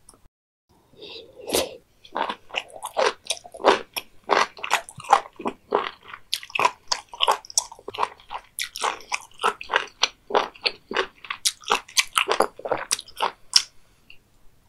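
Close-miked chewing of raw beef omasum (cheonyeop), a crisp, crunchy chew repeated about four to five times a second, starting a second or so in and running almost to the end.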